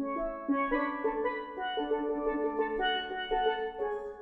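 A pair of steelpans played with sticks: a flowing melody of quick, bell-like struck notes, several sounding together, with some notes held by rolling.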